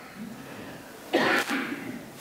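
A person coughing once, a short harsh burst about a second in.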